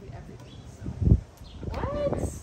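A single dull low thump about halfway through, then a voice exclaiming near the end.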